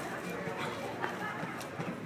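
Galloping horse's hoofbeats on arena dirt as it passes close by, with a few sharp knocks.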